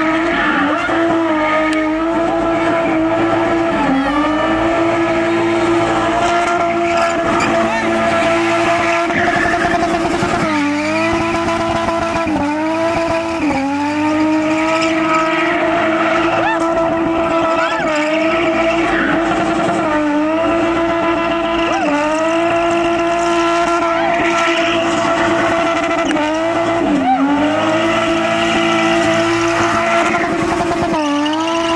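BMW E30's M20 straight-six engine held at high revs while spinning, with the rear tyres squealing. The revs stay high and steady, and several times they dip briefly and climb straight back.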